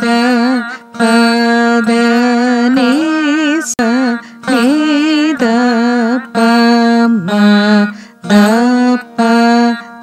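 Carnatic (Saraswati) veena playing a beginner's alankaram exercise in rupaka tala: a series of plucked notes roughly a second apart, many of them bent up and down in pitch by pulling the string on the fret.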